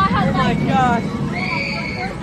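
High-pitched human shrieks and cries, falling in pitch in the first second, then one long held high shriek near the end, over a general crowd din.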